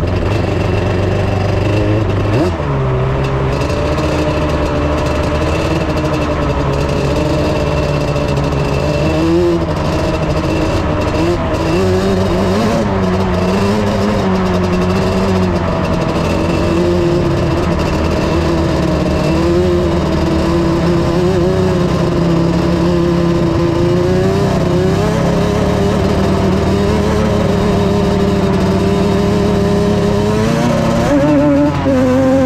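Dune vehicle engine running continuously while driving over sand, its pitch rising and falling with the throttle.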